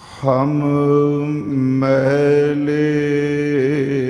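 A man's voice intoning Sikh Gurbani in long held notes, chant-like. There is a short break about a second and a half in, and the pitch wavers just before the end.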